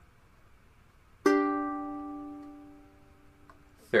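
Ukulele with the top three strings of a G chord (C, E and A strings) plucked together once, about a second in. The chord rings and fades away over about two and a half seconds.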